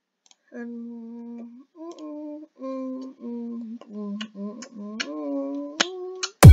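A person humming a short tune to himself: a string of held notes at changing pitches, sliding between some of them. Several mouse clicks are heard along with it.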